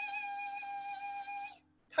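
A steady, high-pitched buzzing tone standing for a cicada's summer song. It holds one pitch for about a second and a half, then cuts off.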